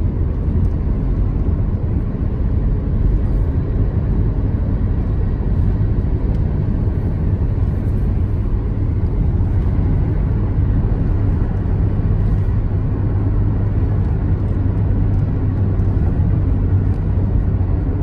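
Steady low rumble of road and engine noise heard from inside a car's cabin while driving at speed.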